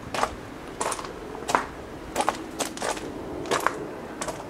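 Footsteps crunching on a loose gravel path at a slow walking pace, a short crunch roughly every half second.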